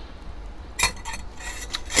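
Stainless steel cooking pot and its lid clinking as the pot is handled: a few sharp metallic strokes about a second in, then more near the end.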